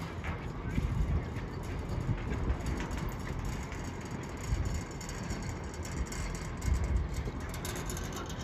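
Riblet fixed-grip double chairlift in motion: the steady running noise of the haul rope and chair, with wind gusting on the microphone. Near the end comes a quick run of clicks as the chair rolls through a tower's sheave train.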